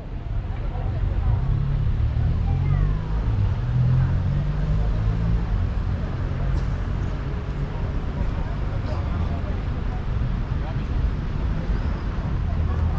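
Outdoor street ambience: a steady low rumble of road traffic with indistinct voices of passers-by, fading in over the first second.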